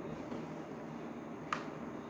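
A single sharp click about one and a half seconds in, over a steady low room hum.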